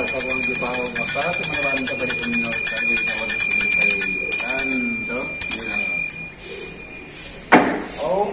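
Small brass puja hand bell rung rapidly and continuously, a steady high ring, breaking off about four seconds in and then rung in a few short bursts until about six seconds in. A single sharp thump near the end.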